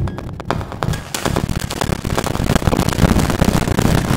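Live-coded electronic music made with TidalCycles: a dense, glitchy texture of clicks and noise over a low rhythmic pulse, thickening about a second in.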